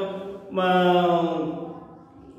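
A man's voice holding one long, drawn-out syllable that slowly falls in pitch and fades out near the end.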